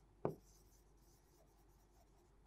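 Chalk writing on a blackboard: one sharp tap as the chalk strikes the board about a quarter second in, then faint, barely audible writing strokes.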